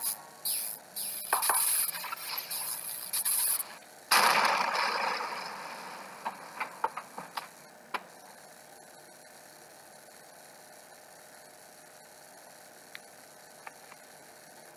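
Animation sound effects of a computer malfunctioning, played through laptop speakers: a run of short electronic glitch noises, then a loud noisy burst about four seconds in that fades over the next two seconds, a few sharp clicks, and after that only a faint hum.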